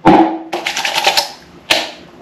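Hands patting and slapping aftershave splash onto freshly shaved cheeks: a loud slap at the start, then a quick run of light pats, and one more sharp pat near the end.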